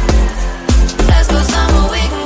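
Electronic background music with a steady beat and a deep bass line.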